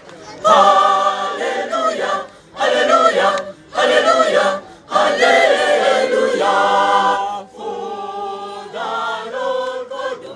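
A choir of young women singing unaccompanied, in loud phrases broken by short pauses. The singing turns quieter about three-quarters of the way through.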